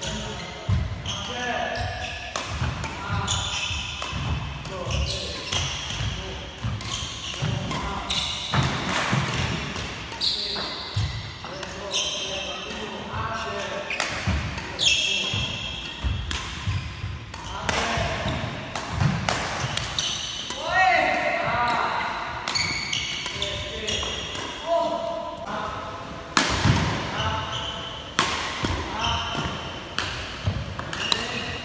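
Badminton rally on a wooden indoor court: rackets strike the shuttlecock in quick exchanges, among thumping footfalls and squeaking shoes on the floor. The hall's echo colours the sound.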